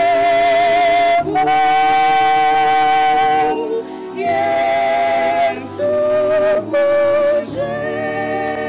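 A hymn: voices singing long held notes over a Yamaha PSR-S750 electronic keyboard, in phrases with short breaks between them.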